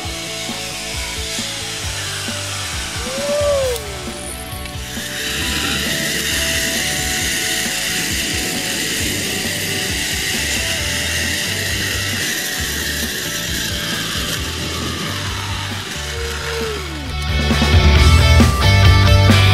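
Zipline trolley's pulleys running along a steel cable: a steady whirring hiss that swells about five seconds in and fades near the end, over background music.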